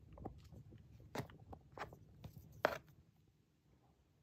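Wooden popsicle sticks and a hot glue gun being handled while gluing: a few faint clicks and crackles, the loudest just before the last second, which is quiet.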